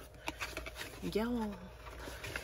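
A woman's short wordless hum, rising then falling in pitch, about a second in, with a few light clicks before it.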